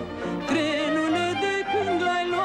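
Romanian folk band playing an instrumental interlude between sung verses: a violin leads a quick, ornamented melody over an alternating bass line, starting about half a second in as the singer's held note fades.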